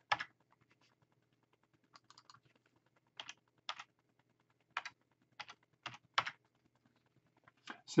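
Computer keyboard keys tapped in short, irregularly spaced keystrokes, about a dozen in all, as a number is typed into a field.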